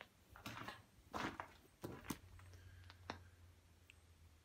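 Quiet room with a few faint rustles and a click as a handheld camera is moved and turned around, and a faint low steady hum coming in about halfway through.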